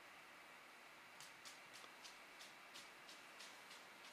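Near silence: room tone, with a run of faint, light ticks about three a second from about a second in until near the end.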